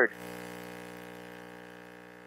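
A faint, steady electrical hum with many overtones, fading a little over the pause. It most likely comes from the church sound system. The last of a man's word cuts off right at the start.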